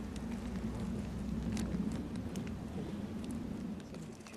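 A black plastic bin bag being handled, with a few faint crinkles over a steady low rumble.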